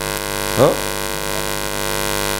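Steady electrical mains hum from the lecture's microphone and amplifier system, with a short, brief sound just over half a second in.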